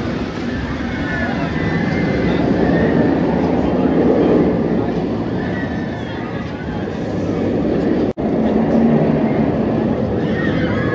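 Great Bear's steel inverted coaster train rumbling along its track as it runs through its elements, swelling and easing as it passes, with voices of people nearby. The sound drops out for an instant about eight seconds in.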